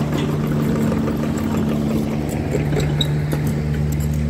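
Kubota mini excavator's diesel engine running steadily at close range, a low even hum; a higher steady tone above it drops out about halfway through.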